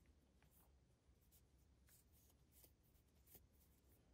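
Near silence, with faint scattered scratches and ticks of a crochet hook working through yarn.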